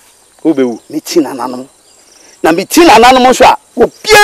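Dialogue in short spoken phrases, the loudest near the end, over a steady high-pitched insect chirring in the background.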